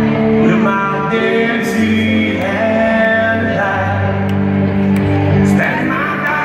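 Live country band playing, with singing over guitar, amplified through an arena sound system.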